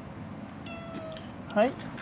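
A cat's short, sharp meow about one and a half seconds in.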